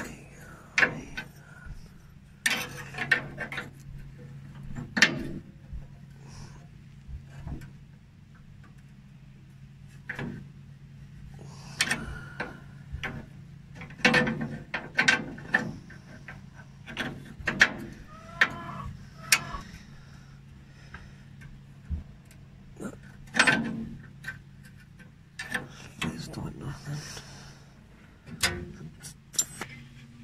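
Irregular metallic clicks and knocks of a spanner working a transmission cooler line fitting on a radiator as it is tightened, over a steady low hum.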